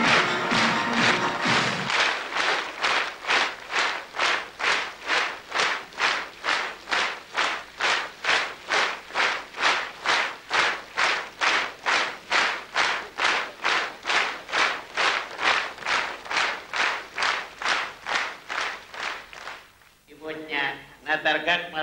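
A short burst of music ends about two seconds in, then a theatre audience claps in unison, in a steady rhythm of about two claps a second, fading slightly near the end.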